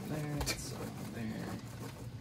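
Puffed corn snacks poured from a plastic snack bag onto a ceramic plate, with a faint rustle and light clicks. A short hummed voice sound comes about half a second in.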